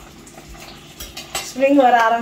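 A metal spoon stirring food in a stainless-steel pan, with a few light clicks of spoon against the pan about a second in.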